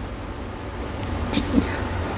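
Low steady rumble of background noise, with a short hiss and a brief faint voice sound about one and a half seconds in.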